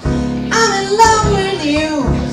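Live swing jazz: a woman singing over piano and upright bass. The singing line comes in about half a second in and bends in pitch.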